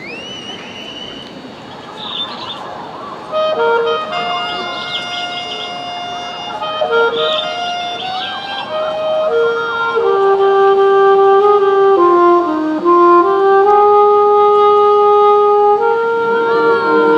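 Crowd murmur with a rising whistle, then about three seconds in a high school marching band's woodwinds begin a slow melody of long held notes, growing louder toward the end.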